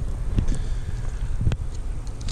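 Wind buffeting the microphone as a steady low rumble, with a few faint clicks and one sharp click about one and a half seconds in.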